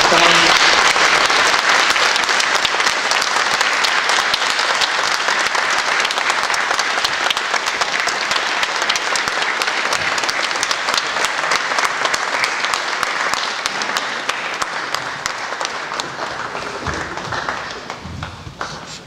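Large audience applauding: many hands clapping at once, starting suddenly and thinning out near the end.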